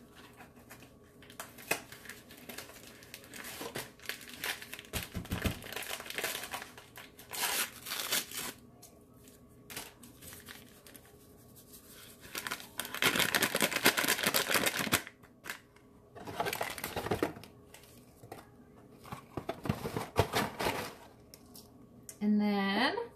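Packaging of a box of instant pudding mix being crinkled and torn open by hand, in irregular rustling bursts, with the longest and loudest stretch about two-thirds of the way through.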